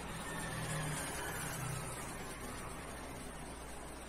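Faint road traffic: a passing vehicle's low engine rumble that swells over the first couple of seconds and then fades.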